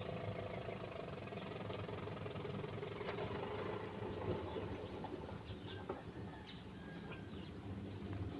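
A faint, steady engine hum, like a motor idling, with a few light clicks.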